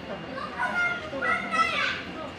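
A young child's high-pitched voice calling out in two short bursts, over a background of visitors' chatter.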